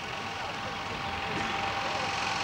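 Steady outdoor background noise, an even rumble and hiss, with a faint voice about one and a half seconds in.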